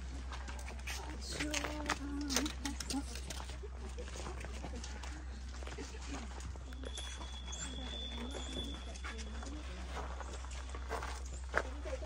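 Indistinct voices of people talking nearby, in snatches, over a low steady hum.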